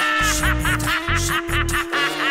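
A man's rapid maniacal cackle, a run of short 'ha' syllables about five a second, over the song's bass and drums, which stop just before the end.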